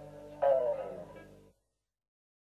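Last notes of a folk band's guitar-and-fiddle arrangement: a held chord, then about half a second in a louder final note that slides down in pitch, before the sound cuts off abruptly about a second later.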